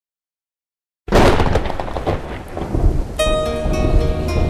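Silence for about a second, then a thunder-and-rain sound effect starts suddenly as the intro of a new reggae track. About two seconds later pitched music comes in over it.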